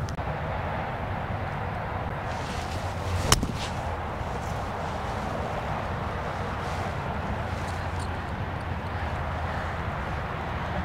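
A single sharp crack of a golf club striking the ball off the tee, about three seconds in, over steady outdoor background noise.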